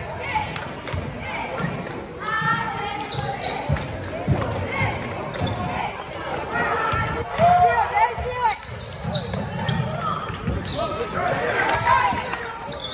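Basketball game sounds in a gym: a basketball bouncing on the hardwood court in repeated thuds, with spectators' voices shouting over the play.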